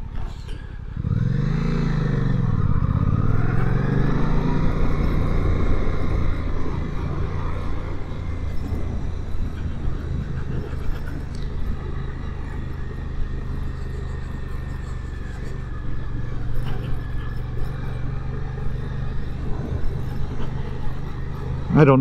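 2023 Suzuki GSX-8S's 776 cc parallel-twin engine pulling away about a second in. The revs climb, drop once at an upshift, climb again, then settle into a steady cruising note.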